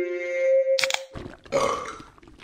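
Sound effect over an animated logo: a held electronic-sounding tone that steps up in pitch, a sharp click about a second in, then a short rough burst.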